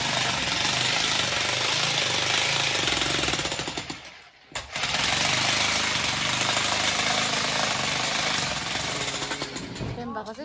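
Loud, steady, rapid mechanical rattle from a machine. It cuts out suddenly about four seconds in and starts again half a second later.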